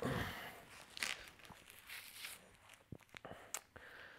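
Faint rustling and scraping of a nylon tourniquet strap, a Russian-made copy of a CAT tourniquet, being pulled tight through its buckle around a thigh, with a few light clicks.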